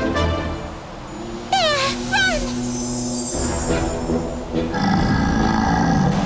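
Cartoon background music, with two quick falling cries about a second and a half in and a growl from a glowing animated bear near the end.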